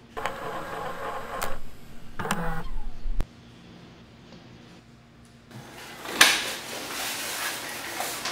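A steady noise for about three seconds that cuts off suddenly, then after a short lull the knocks and rustling of a door being opened.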